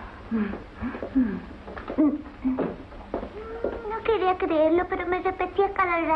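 A person's voice: short gliding vocal sounds, then from about four seconds in a longer, louder stretch of voicing that the recogniser did not catch as words.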